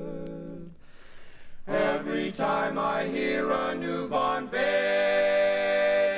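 Male barbershop quartet singing a cappella in close harmony. A held chord ends about a second in, and after a short pause the voices come back in with moving lines, settling on a sustained chord near the end.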